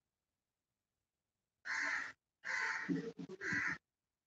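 A crow cawing: three harsh calls in quick succession starting about one and a half seconds in.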